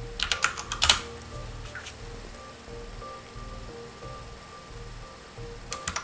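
Several quick computer-keyboard keystrokes in the first second, then a low steady hum with a faint pulsing tone.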